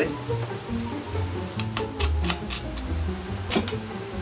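Background music, with a run of short sharp crackles in the second half as a stick-welding electrode is scratched on the steel to strike the arc.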